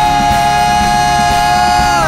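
A male pop singer's voice holds one long high note, steady in pitch, over a band backing.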